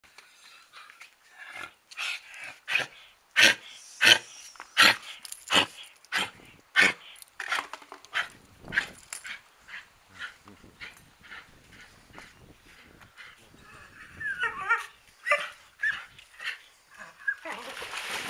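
A dog barking over and over, a sharp bark roughly every two-thirds of a second, loudest through the first half and then sparser and quieter. Near the end a splash as the dog goes into the pool water.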